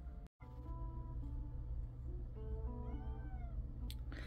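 Faint cat meows: a few soft pitched calls, with rising-and-falling calls about three seconds in.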